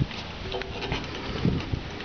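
Irregular light knocks and steps of someone climbing down a hopper grain trailer's back ladder, over a low rumble on the microphone.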